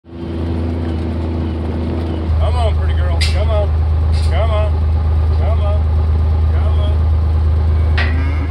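Pickup truck driving on a dirt ranch road, a loud steady low rumble throughout. From about two and a half seconds in, short wavering calls sound over it, with a couple of sharp clicks.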